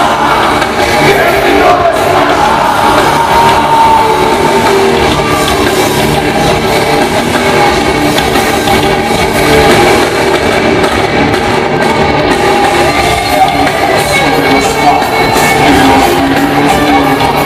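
Live rock band playing loud and without a break: electric guitars, bass and drums with a singer, heard from the audience in a theatre hall.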